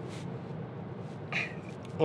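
A pause in speech over steady low background noise, with a short intake of breath at the start and another about one and a half seconds in.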